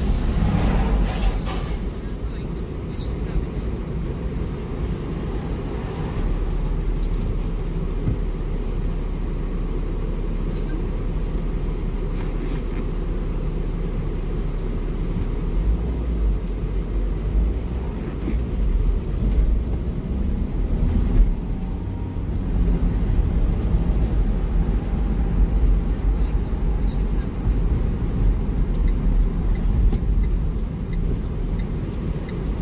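Car driving, heard inside the cabin: a steady low rumble of engine and road noise that rises and falls a little with speed.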